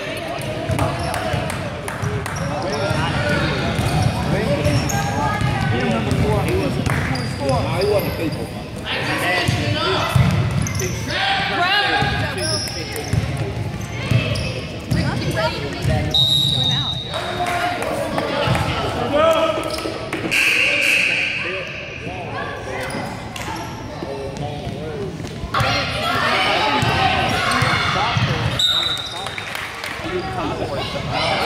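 A basketball bouncing on a gym's hardwood court during a youth game, with knocks and steps of play and a steady babble of voices, all echoing in the large hall.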